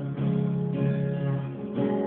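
Acoustic guitar strumming chords, with a new strum near the start and another shortly before the end.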